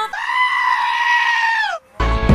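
A goat screaming: one long, high bleat held steady for well over a second, then falling in pitch as it breaks off. It is heard on its own, with no music under it.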